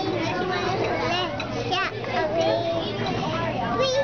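A toddler girl singing a song in a small, high voice, holding some notes for a moment.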